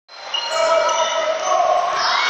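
Crowd noise in a basketball arena during play: a steady din of voices with several long held tones, like sustained shouts or horns, over it.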